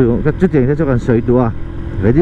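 A person talking over the low, steady rumble of a moving motorcycle and its wind noise.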